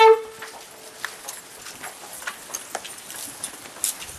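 A long, loud horn blast on one steady note cuts off just after the start, followed by scattered light knocks and clicks.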